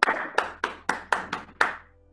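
One person clapping hands close to the microphone: about seven sharp claps, roughly four a second.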